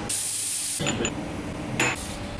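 A hiss of spray lasting under a second, followed by a few light clicks and a short burst of noise near the end.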